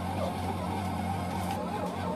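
Sunbeam bread machine's kneading motor running with a steady low hum, mixing whole-wheat bread dough on its dough cycle with the lid closed.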